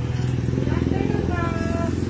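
A motorcycle engine running steadily, its low hum pulsing fast, with a short voice heard briefly in the second half.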